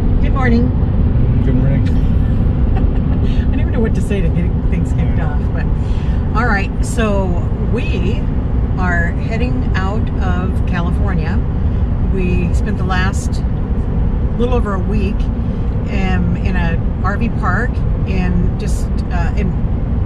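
Steady low road and engine rumble inside the cab of a pickup truck driving at highway speed, with people talking over it.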